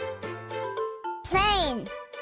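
Children's phonics chant over backing music. A few held musical notes with a bass line, then a voice calls out the word "plane" with a falling pitch in the second half.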